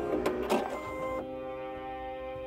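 Baby Lock Soprano sewing machine's automatic thread cutter working, a few short mechanical clicks and whirs in the first half-second as it cuts the thread after the reinforcement stitches. Background music holds a steady chord underneath and is all that remains after that.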